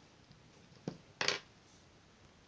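Paper handled on a tabletop: a light tap a little under a second in, then a short rustle as the paper strip is moved across the table.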